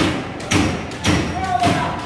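Loud thumps repeating about twice a second, protest noise meant to stop the meeting, with a shouting voice in between.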